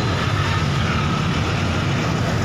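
Steady engine drone and running noise of a bus heard from inside its cabin.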